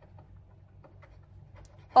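Ballpoint pen writing on paper: faint, scattered scratches over a steady low room hum, with a voice starting right at the end.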